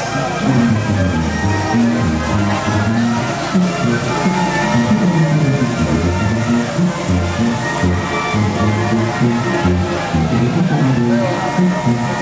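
Music plays throughout at a steady level, with a bass line stepping from note to note and voices along with it.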